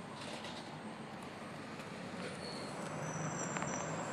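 Steady road traffic noise, with a few faint high whistling tones in the second half.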